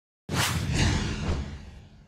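News title-graphic sound effect: a whoosh with a low rumble that starts suddenly just after the start and fades away over about two seconds.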